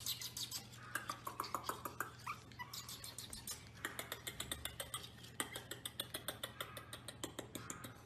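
Pomeranian puppies moving about in a wooden playpen: rapid, irregular scratching and clicking, with a few short, faint high-pitched whimpers in the first few seconds over a steady low hum.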